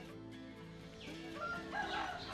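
A rooster crowing and chickens clucking faintly, over soft background music with long held notes.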